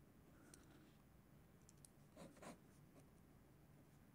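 Near silence: quiet room tone with a few faint scratches and clicks, the two loudest close together a little past halfway through.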